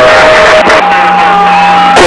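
CB radio receiver putting out loud static with a steady whistling tone through it. The tone breaks off about half a second in and comes back at a higher pitch for the rest.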